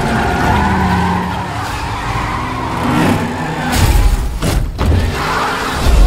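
Car engines running and tyres squealing as the cars skid and drift. Two heavy hits come a little past halfway.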